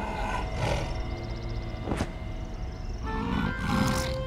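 Cartoon polar bear character making gruff grunting sounds over light background music, with a sharp click about two seconds in.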